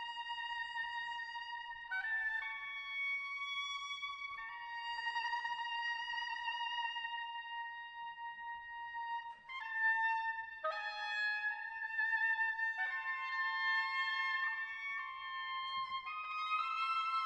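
Oboes playing long, high held notes that overlap in close harmony, the chord shifting every few seconds.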